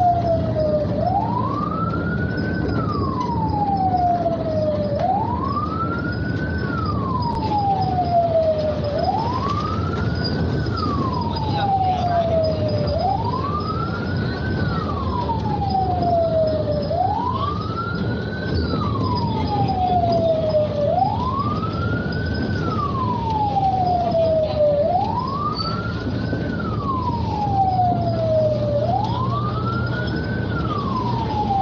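A wailing siren: each cycle rises quickly in pitch and then falls slowly, repeating about every four seconds. Under it runs the steady engine and road noise of a moving vehicle.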